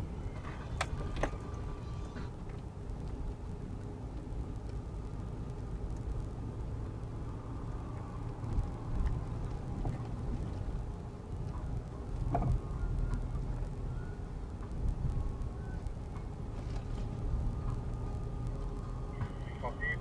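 Off-road 4x4 driving on a rough dirt track, heard from inside the cabin: a steady low engine and tyre rumble with a few short knocks and rattles from the bumpy ground.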